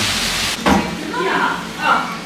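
Speech: voices at a shop counter, including a woman saying "yeah". Before that, a steady hiss cuts off suddenly about half a second in.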